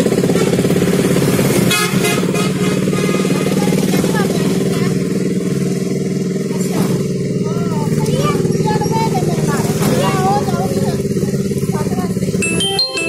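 Steady engine drone from a vehicle moving through road traffic, with motorcycles passing and a horn sounding briefly about two seconds in. Faint voices come through the engine noise.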